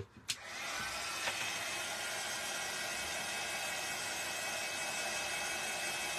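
Craft embossing heat gun switched on with a click, its fan then running with a steady whoosh and a faint high whine as it warms up before melting embossing powder.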